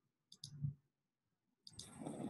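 A computer mouse click on a link: two short, close, high clicks as the button is pressed and released, followed by a faint low sound, then near silence.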